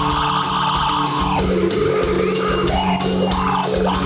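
Live rock band playing through a club PA: electric guitar chords and bass over a steady drum beat, with a melody line bending up and down from about halfway in.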